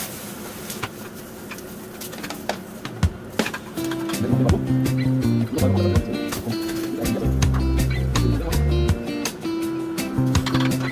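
Metal tongs clicking and scraping against a frying pan as charred potato peels are stirred in it, a few sharp clicks over the first three seconds. Background music with a steady bass line and held notes comes in at about four seconds and carries on, louder than the pan.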